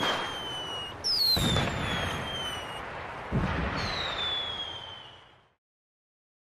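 Fireworks going off: a few sharp bangs, each followed by a whistle that falls slowly in pitch, the last about three seconds in. The sound fades away about half a second before the end.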